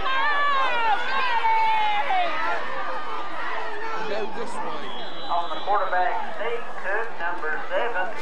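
Spectators yelling and cheering during a play, with one voice holding long drawn-out shouts in the first couple of seconds. About five seconds in, a single steady high whistle blast lasts about a second, like a referee's whistle ending the play.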